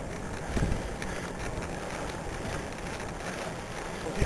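Wind rushing over the microphone of a camera on a moving road bicycle: a steady low rumble of air, with a brief gust about half a second in.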